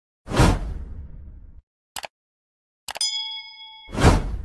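Animated subscribe-button outro sound effects. A whoosh with a deep boom fades over about a second, then a short click. A mouse click sets off a ringing notification-bell ding for nearly a second, and another whoosh and boom hits at the end.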